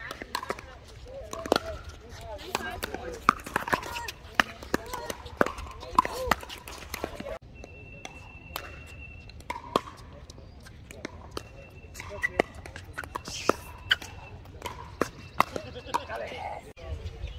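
Pickleball rallies: paddles striking a hollow plastic ball, sharp pops every second or so and sometimes in quick succession, with overlapping hits from neighbouring courts. Indistinct voices chatter underneath.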